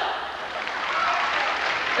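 Audience applauding steadily, with a few voices in the crowd.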